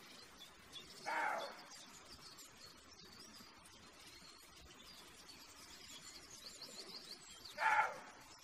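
Two short calls of a roe deer buck, one about a second in and one near the end, over faint birdsong.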